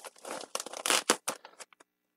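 Plastic packaging crinkling and rustling, with a few sharp crackles, as a blister-packed pair of trauma shears is pulled out of a plastic mailer bag; the sound stops abruptly near the end.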